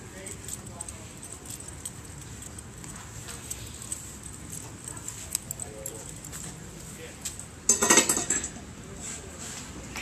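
Scattered light clicks and clinks, then a loud, short burst of jangling clinks about eight seconds in.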